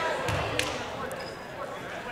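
Basketball gym at a stoppage in play: a low murmur of voices, with a few sharp knocks in the first second, a basketball bouncing on the hardwood floor.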